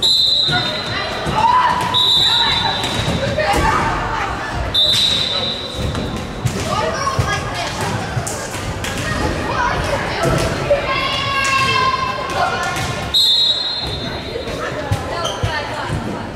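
Short, high, steady whistle blasts, four of them, from the volleyball referee, amid girls' voices calling out and a ball bouncing on the hardwood gym floor, all echoing in the large gym.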